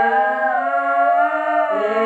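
Wordless female vocals layered with a loop pedal: several notes held in harmony at once, with the lower notes moving to new pitches near the end.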